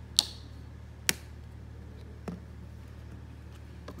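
Sharp clicks of plastic bottles and caps being handled: two loud clicks about a second apart, then two fainter ones, over a steady low hum.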